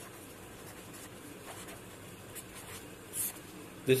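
Pen writing on paper: faint, light scratching strokes, with one short, sharper scrape about three seconds in.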